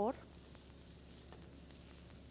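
Diced onion frying in butter in a nonstick pan, a faint steady sizzle, with a few light ticks from a silicone spatula stirring it. The onion is softening and starting to turn translucent.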